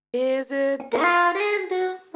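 Sampled female vocal phrase played through the Korg KAOSS Replay's Pitch Corrector effect set to G / E minor: the sung notes are held flat and jump from pitch to pitch instead of gliding, an auto-tune sound. There is a short break a little under a second in.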